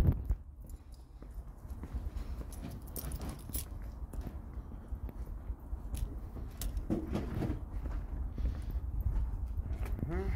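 Footsteps on brick paving and scattered knocks and clicks of crates and boxes being loaded into a van, over a low, steady rumble.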